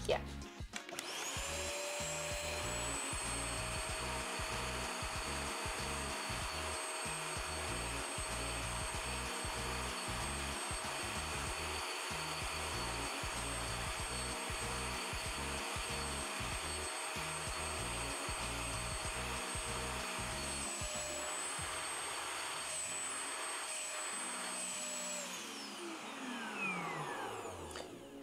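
Anko spot cleaner's suction motor starting up about a second in and running steadily as its nozzle sucks water out of the carpet, with a low uneven rumble under it for most of the run. Near the end the motor is switched off and winds down, falling in pitch.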